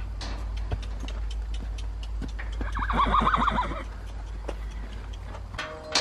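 A horse whinnies once, a pulsing call of about a second near the middle, over a steady low rumble and scattered light clicks and knocks.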